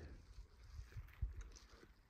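Faint low rumble of wind on the microphone in a pause between speech, with a light tap about a second in.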